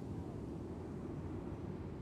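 Steady low, fluttering rumble of wind buffeting the microphone on an open beach.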